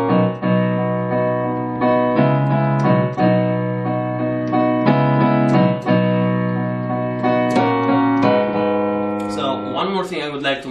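Piano playing slow, sustained chords in B major with both hands, a low bass note under each chord, the chords changing every one to two seconds.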